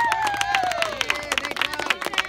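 Small group of people clapping irregularly, with a high voice cheering over the first second, its pitch falling as it trails off.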